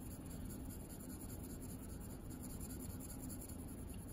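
2B graphite pencil shading on paper with light pressure: a faint, steady scratching of strokes laid down as a layer of tone.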